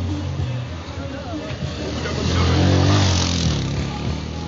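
A car driving past close by, its engine and tyre noise swelling to a peak about three seconds in.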